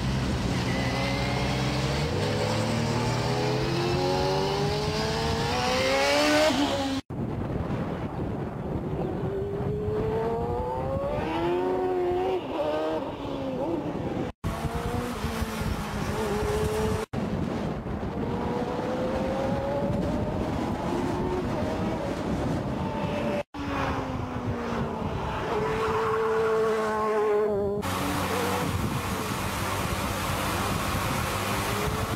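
Caparo T1's V8 engine revving hard under acceleration. Its pitch climbs and drops back again and again as it shifts up through the gears, across several clips joined by abrupt cuts.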